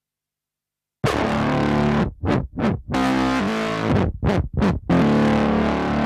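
Nord Lead 4 virtual analog synthesizer playing, with its LFO assigned to the filter. It is silent for about the first second, then plays a held sound broken by several short stabbed notes, and ends on another long held note.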